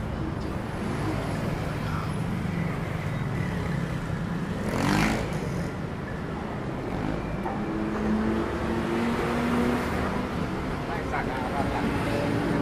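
Busy city street traffic heard from the sidewalk: a steady rumble of engines, with one vehicle passing close about five seconds in, the loudest moment, and engine notes holding steady in the second half.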